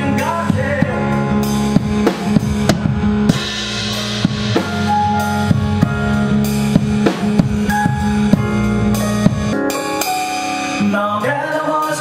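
Live indie band playing an instrumental passage: a drum kit beating out a steady rhythm over a Yamaha CP stage piano and electric bass. The drums drop out about ten seconds in, and a new song begins near the end.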